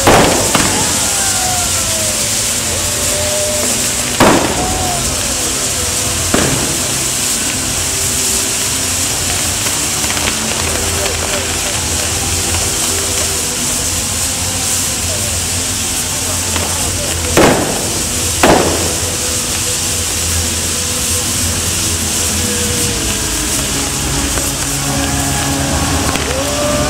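Fireworks display: about six sharp bangs, two near the start, one about four seconds in, one about six seconds in and a close pair around seventeen to eighteen seconds, over a steady din of crowd voices and music.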